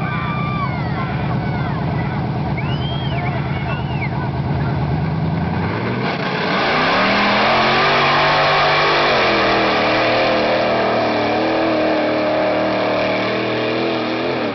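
Lifted Chevrolet square-body 4x4 pickup's engine idling steadily, then revving hard about six seconds in as it launches into the mud pit, running at high revs with the pitch rising and falling as it ploughs through. A PA announcer talks over the idle in the first few seconds.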